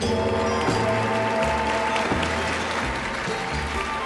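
Audience applause over the act's instrumental stage music, the applause thinning out near the end.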